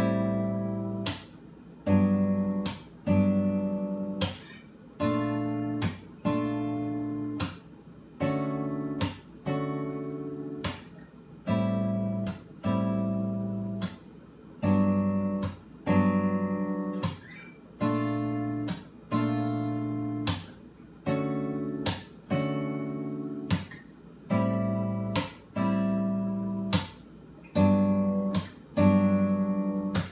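Steel-string acoustic guitar played fingerstyle, a chord about once a second, each ringing and fading before the next, some cut short. It cycles through Dmaj7, Am7, Gmaj7 and B-flat maj7 chords.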